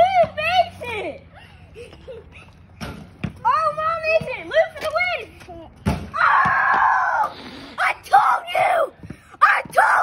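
Children shouting and screaming excitedly in high voices, loudest in one long scream about six seconds in. A couple of dull thuds come in between.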